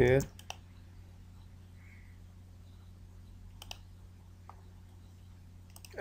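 A few sparse, isolated computer mouse clicks over a low steady hum.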